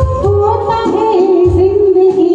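A woman singing a Hindi film song live into a microphone, backed by an electronic keyboard and a steady drum beat.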